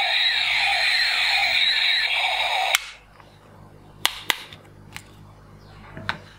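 Electronic firing sound effect of a battery-powered toy space blaster, a loud warbling, sweeping electronic noise from its small speaker that cuts off abruptly with a click near the middle. A few sharp plastic clicks follow as the toy is handled.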